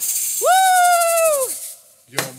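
Hand shakers rattle briefly, then a high voice holds a single 'ooh' note for about a second, sliding up into it and dropping off at the end, closing off a sung song.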